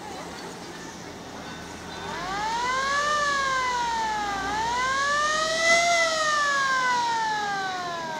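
Siren of a vintage fire engine wailing. It starts about two seconds in, rises and falls, rises higher a second time, then slowly winds down in pitch.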